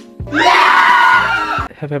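A loud, high-pitched scream lasting about a second and a half, over background music. A man's voice starts speaking near the end.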